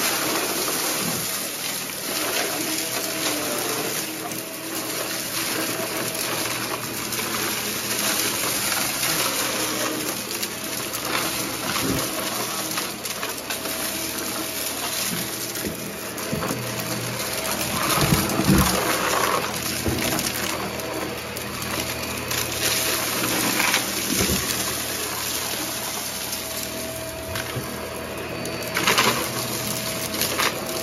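Upright vacuum cleaner running steadily on carpet, with crackles and rattles as it sucks up scattered debris. Louder bursts of crackling come about two-thirds of the way through and again near the end.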